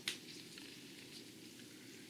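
Handling noise from hard objects on a table: one sharp click just after the start, then a few faint ticks, over a low steady hiss.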